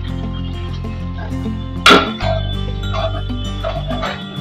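Background music with steady sustained bass notes. About two seconds in there is one sharp, loud clink of a steel ladle knocking against a steel kadhai while stirring saag, followed by a few lighter scrapes and knocks.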